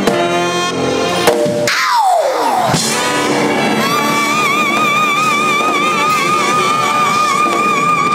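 Live band music in a hall: a rhythmic passage breaks off about two seconds in with a falling glide, then a long high note with vibrato is held over the band.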